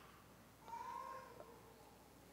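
Near silence: quiet church room tone, with one faint, brief high-pitched whine lasting under a second.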